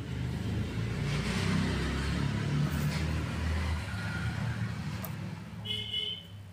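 Low rumble of a passing motor vehicle, swelling over the first couple of seconds and then easing off. A short high tone sounds near the end.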